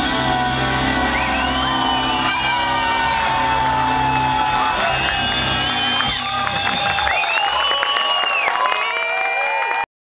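Live band playing jazz-funk on stage: keyboards over a held bass line, which drops out about seven seconds in, leaving higher gliding keyboard tones. The sound cuts off suddenly just before the end.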